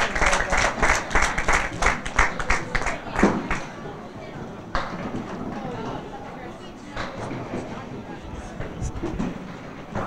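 Spectators clapping for a good ball for about three seconds, then fading into a bowling alley's background chatter with a few scattered knocks.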